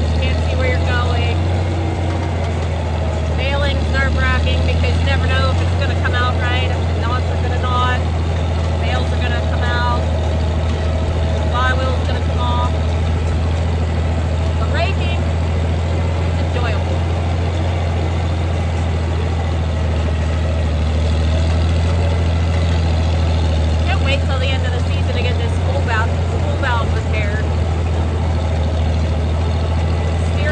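Tractor engine running steadily under way while pulling a hay rake, a loud constant low hum.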